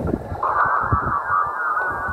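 Shortwave radio reception from a Tecsun PL-368 portable receiver's speaker on the 20-metre amateur band in SSB mode: a warbling, garbled signal in a narrow pitch band comes in about half a second in, over steady band noise, with a few low handling thumps.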